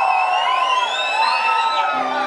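Live-show audience cheering and whistling, with many overlapping whistles rising and falling in pitch.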